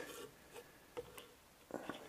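A few faint, short clicks and taps of a pry bar working at the O-ring-sealed inverter sealing plate on a Tesla front drive unit's aluminium casing.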